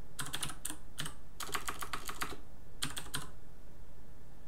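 Typing on a computer keyboard: several short bursts of keystrokes with brief pauses between them, thinning out in the last second.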